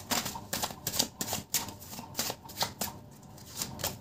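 Deck of tarot cards being shuffled by hand: an irregular run of quick card slaps, about four a second, with a short pause about three seconds in.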